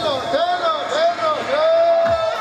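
Davul-zurna halay music: the zurna plays a shrill melody in swooping, ornamented phrases and ends on a long held note, while the davul drum mostly pauses.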